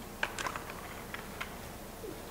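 A handful of light clicks, most in the first second, as the Steyr AUG's barrel is unlocked and drawn out of the rifle.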